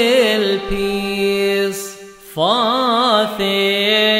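Coptic hymn sung in a chanted, melismatic style, the voice wavering in ornaments around each note. About two seconds in a held note fades away, then the voice comes back in with a rising slide.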